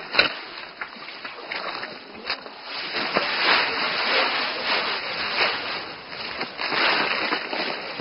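Rice stalks being cut and gathered by hand: irregular rustling, crunching strokes through the straw.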